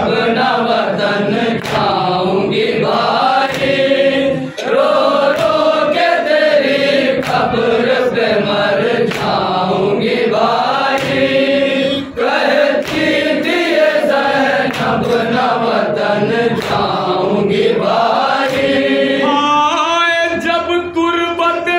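A group of men chanting a noha (Shia mourning lament) together in a drawn-out, rising and falling melody. Sharp slaps come about once a second, from chest-beating (matam) in time with the chant.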